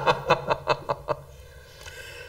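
Laughter: a quick run of short breathy laughs that dies away after about a second.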